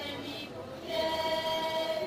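A group of voices singing a Slovak folk song together, holding one long steady note from about a second in.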